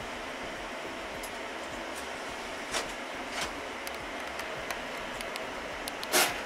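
Steady whir of cooling fans from running rack servers in a server room, with a few light clicks scattered through it.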